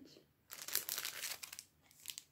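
Paper sticky-note pad being handled, rustling and crinkling in a cluster of short crackles for about a second.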